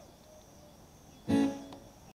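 A single loud guitar chord struck a little over a second in, ringing briefly and dying away, over a faint background.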